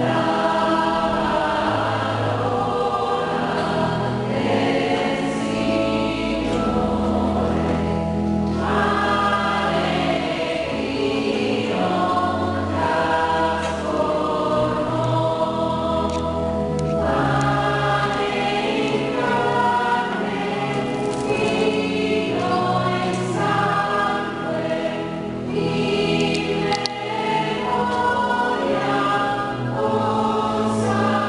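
Church choir singing a hymn, with steady held low notes underneath.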